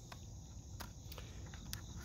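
Faint, steady high chirring of insects, with three or four light clicks as a small plastic tester is handled and set down on a bamboo mat.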